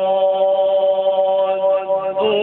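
A male qari reciting the Qur'an in the melodic qirat style, holding one long drawn-out note.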